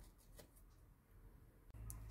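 Near silence, with a few faint snips from scissors cutting open a paper flan-mix sachet and a brief faint rustle near the end.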